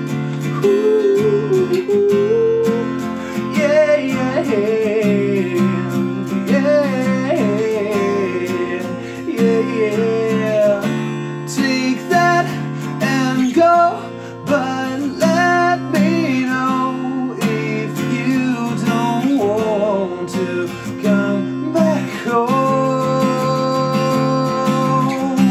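Acoustic guitar strummed and picked through a song's chords, with a man singing a melody over it.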